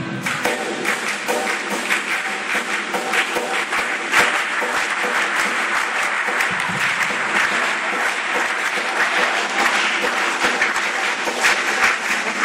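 Many people clapping in a dense, irregular patter of applause, beginning as a choir's singing ends at the start.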